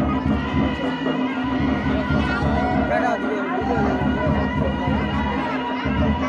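Odia folk dance music on drums and a wind instrument holding a steady droning note, with crowd voices chattering over it.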